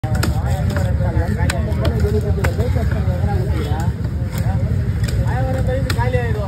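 Busy market din: many people talking at once over a steady low engine rumble. Short sharp clicks of a heavy knife striking the fish and the wooden chopping block come at irregular intervals.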